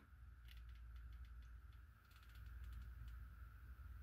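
Faint detent clicks of a Primary Arms PLxC 1-8 rifle scope's turret turned by hand: a quick run of about a dozen clicks starting about half a second in and lasting around a second and a half.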